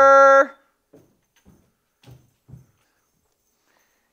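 A man's voice holding one long, steady-pitched shouted call that cuts off about half a second in. Then come four faint, soft, short knocks, spread over the next two seconds.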